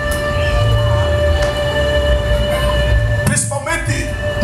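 A sustained keyboard chord, several notes held steadily over a deep low rumble. A voice comes in near the end.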